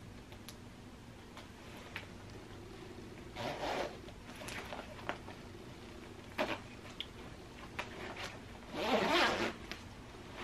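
The zipper of a quilted puffer coat being zipped up: faint clicks and fumbling as the slider is engaged, a short zipping pull about three and a half seconds in, and a longer, louder pull near the end.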